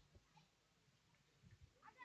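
Near silence: faint room tone with a few faint low thuds.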